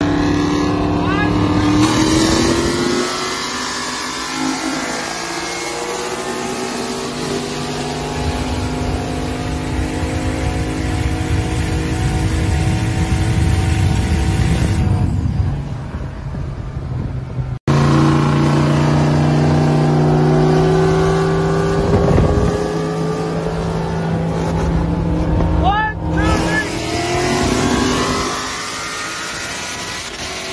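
Turbocharged 6.0 LS V8 of a single-cab Silverado pulling hard through the gears, heard from inside the cab, its note rising with each gear. There is a sudden cut a little over halfway.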